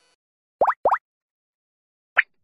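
Two quick rising cartoon 'bloop' sound effects in succession, each a short upward-sweeping pop.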